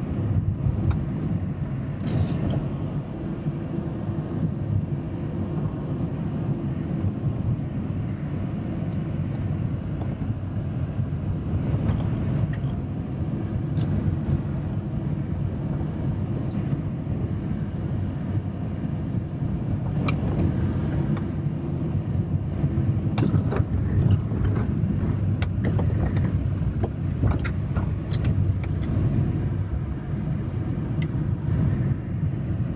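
A car driving on a winding road, heard from inside the cabin: a steady low rumble of engine and tyres on the road. Scattered short clicks and knocks sound over it, more often in the second half.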